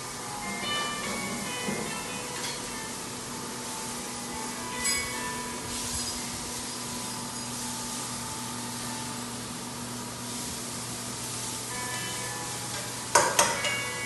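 Onion and vegetables stir-frying in a wok over a high gas flame, a steady sizzle. A spatula clinks and scrapes against the wok a few times, loudest near the end.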